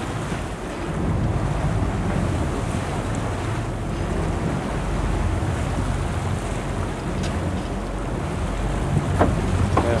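Wind buffeting the microphone over the steady low hum of a fishing boat's engine and the wash of the sea around the hull.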